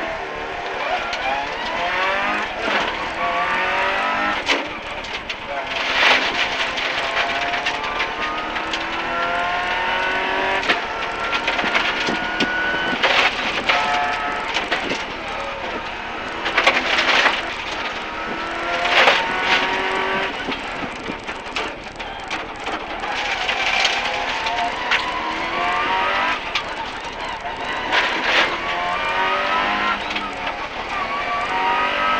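A rally car's engine heard from inside the cabin as it races up a hillclimb course. Its pitch climbs again and again through the gears and drops back at each change, with several short loud bursts along the way.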